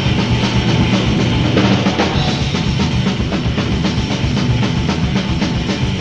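Death/doom metal band playing an instrumental passage from a 1988 demo tape recording. The drum kit is prominent, with rapid, even strokes of bass drum and snare, over a steady wall of band sound.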